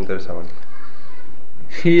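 A man's voice speaking, trailing off, then a pause of about a second, then speaking again near the end.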